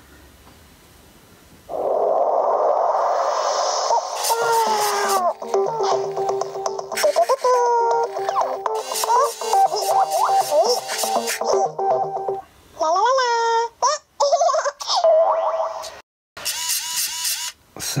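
Cubee Bluetooth robot speaker powering on: its built-in speaker plays a start-up jingle of steady tones and sliding, boing-like sound effects, beginning about two seconds in, with a few short breaks near the end.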